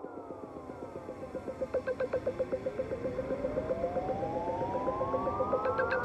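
Opening of an ambient electronic (psybient) track: synthesizer tones sliding downward in pitch, then a long rising synth sweep over a rapid pulsing tone, building in loudness.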